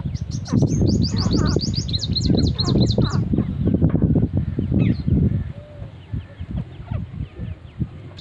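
Birds chirping in a fast, high-pitched series of about six calls a second for the first three seconds, with a few fainter chirps later. Loud low rumbling noise runs under the first half and then fades.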